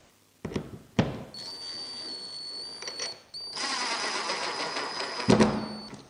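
Cordless drill-driver driving screws into a cup handle on a wooden door. After a couple of clicks the motor whines steadily in two runs, a shorter one and then a longer, louder one, and a knock follows near the end.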